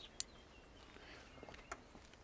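Near-quiet outdoor background with a few faint, sharp clicks: one just after the start and a couple more near the end.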